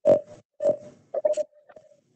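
A person's voice in four short, choppy bursts, grunt- or throat-clearing-like rather than words, heard over a video-call audio feed; the first burst is the loudest.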